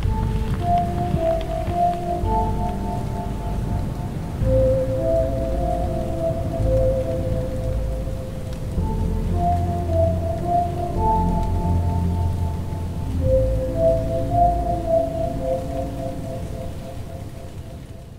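Slow film-score music of long held notes over a steady rain-like hiss and deep rumble. It fades out near the end.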